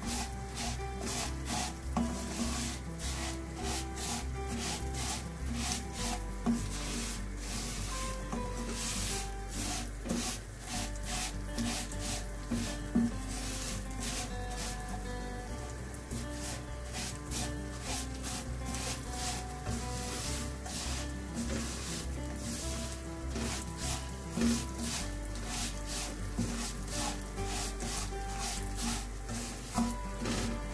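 Slotted spatula scraping and stirring dry vermicelli as it is toasted in a little oil in a non-stick wok: a steady run of rasping strokes against the pan.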